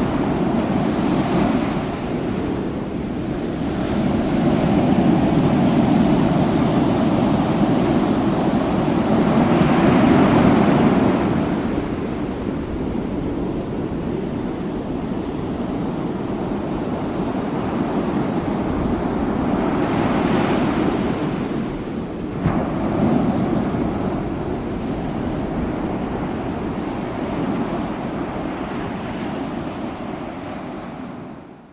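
Ocean surf breaking and washing up the beach in rising and falling swells, with wind buffeting the microphone.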